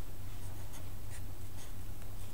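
Felt-tip marker writing on paper in about four short scratchy strokes, over a steady low hum.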